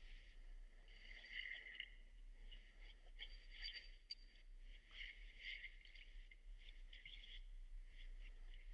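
Near silence: room tone with a faint steady low hum and faint, scattered high-pitched chirps.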